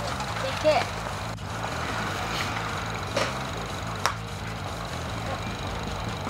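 Driving-range background of faint voices and a low steady hum, with one sharp crack of a golf club striking a ball about four seconds in.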